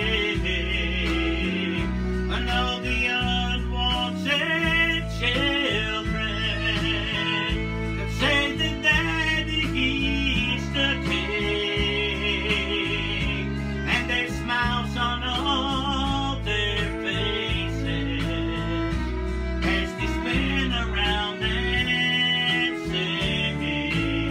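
A man singing a country-style gospel song to guitar-led accompaniment.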